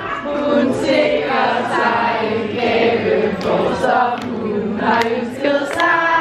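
A group of women singing a song together, several voices at once, holding and gliding between notes.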